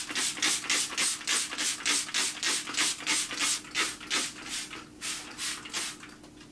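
Plastic trigger spray bottle misting houseplants: a quick run of short spray hisses, about three a second, then a brief pause and three more.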